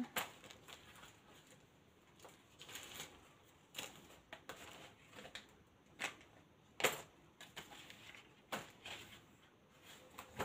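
Faint rustling and scattered light taps of paper and craft supplies being handled while searching through them, with the sharpest tap about seven seconds in.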